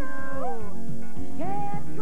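Live band music: a male lead singer sings over keyboard and a steady drum beat, sliding up into long held notes twice.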